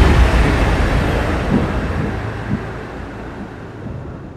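A loud, deep rushing rumble that starts abruptly just before and fades away steadily over several seconds.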